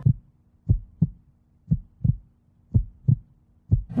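Heartbeat sound effect: low double thumps, lub-dub, about once a second over a faint steady hum. It is a suspense cue under the countdown before the contestants press their buttons.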